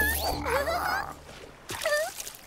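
Cartoon pelican character's vocal sounds: wavering, gliding squawk-like calls through the first second, then a short call near the end.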